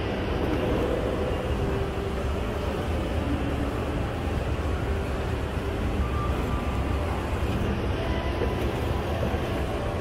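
Steady low rumble of a moving escalator, under the general hum of a shopping mall.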